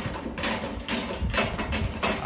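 Hand handling a steel cantilever toolbox, making a run of short scraping and rattling noises, about two a second.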